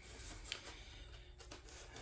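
Faint scratching of fingers picking at packing tape on a cardboard box, with one small tick about half a second in.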